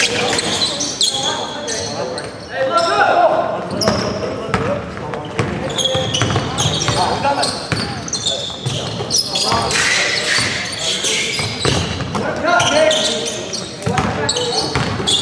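Live basketball play on a hardwood gym floor: the ball bouncing and dribbling, sneakers squeaking in short high squeals, and players' voices, all echoing in the large hall.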